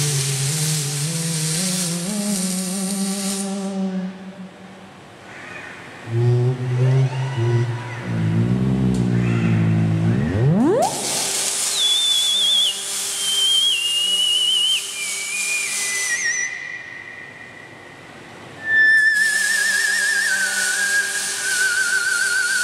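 Moog Etherwave theremin played in slow, wavering tones with vibrato: low pitches at first, a fast rising glide about ten seconds in, then high tones stepping downward. In three stretches, at the start, from about 11 to 16 seconds and from about 19 seconds on, the robots' welding arcs add a loud crackling hiss.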